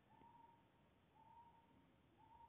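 Near silence: room tone, with a faint steady high note sounding twice, each about half a second long and about a second apart.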